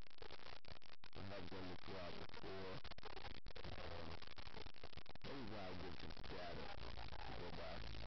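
An indistinct voice over a steady low hum, with the sound cutting out briefly about a second in and again about three and a half seconds in.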